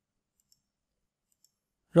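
Near silence broken by two faint, brief clicks about a second apart; a man's voice starts right at the end.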